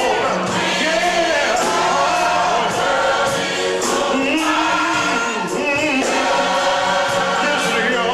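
Gospel choir singing in full voice, with a steady percussion beat of about two strokes a second.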